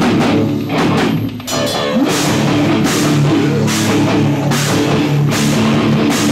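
A hardcore band playing live and loud: electric guitar and a drum kit with cymbal crashes. About a second and a half in the sound drops briefly, and the full band comes back in half a second later.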